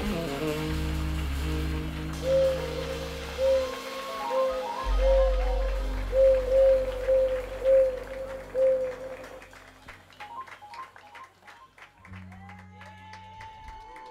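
A jazz quartet closing out a tune live: sustained electric bass and keyboard notes under a short repeated figure of notes, dying away about ten seconds in. The audience then applauds, with a cheer near the end.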